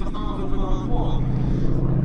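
A North American Harvard IV trainer flying overhead, its Pratt & Whitney R-1340 Wasp radial engine and propeller giving a steady drone that grows louder toward the end.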